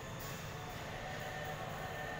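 Steady low hum and hiss of a large, quiet indoor hall, with a few faint held tones over it.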